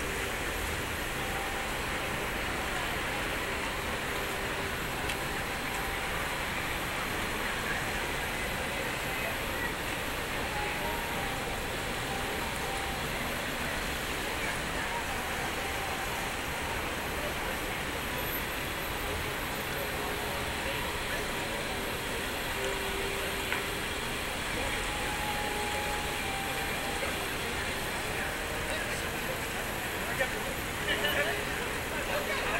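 Steady city street ambience: an even wash of traffic and crowd noise with faint voices in it.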